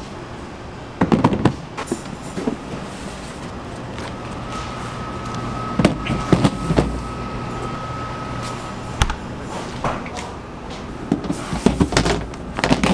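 Plastic dough tubs with lids knocking and scraping as they are stacked and slid into a stainless-steel rack cabinet, in several separate clatters. A steady hum with a faint high whine runs underneath from about four to nine seconds in.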